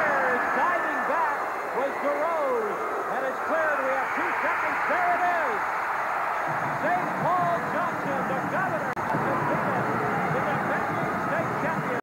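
Hockey arena crowd cheering and shouting, many voices overlapping at a steady loud level, with a brief dropout about nine seconds in.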